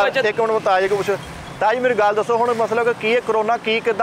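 Men talking, with a short pause about a second in.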